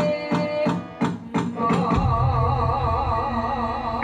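Javanese gamelan playing: evenly spaced pitched metal strokes, about three a second, then a deep stroke about halfway through that rings on with a wavering tone.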